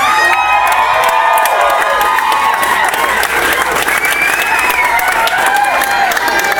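Live audience clapping and cheering, with whoops and shouts over the clapping, just after a rock band's song ends.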